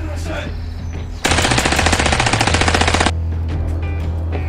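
Machine-gun fire sound effect: one rapid burst of evenly spaced shots, starting suddenly a little over a second in and cutting off abruptly just under two seconds later, over background music.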